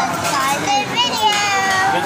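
A child's high-pitched voice making drawn-out wordless sounds, with long held notes that slide up and down in pitch.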